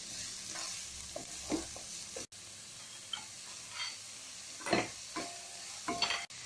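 Chopped vegetables sizzling in oil in a kadai, stirred with a wooden spatula that scrapes across the pan in short strokes.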